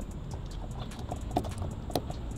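A few light clicks and taps from a key fob being handled, over a steady low background rumble.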